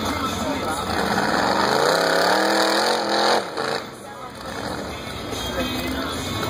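Rock bouncer buggy engine revving hard on a steep hill climb, its pitch rising over about two seconds before it cuts off suddenly, with crowd chatter underneath.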